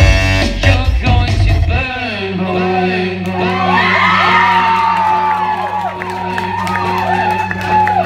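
Live rock band playing loudly, then stopping about two seconds in. A low steady tone rings on from the stage while the crowd cheers and whoops.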